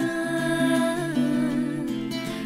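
Music: a song with a long held vocal note over a steady backing. The note bends in pitch about a second in and settles on a new held note.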